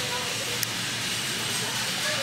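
Steady hiss of warehouse-store background noise, with faint distant voices of shoppers.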